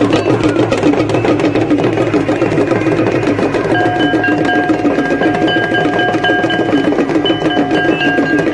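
Fast, continuous percussion with ringing bells accompanying an aarti: dense rapid metallic and drum strikes, with a steady ringing tone joining about halfway through.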